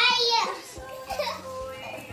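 Children laughing and shrieking as they play, with a loud high-pitched squeal in the first half second, then quieter voices and giggles.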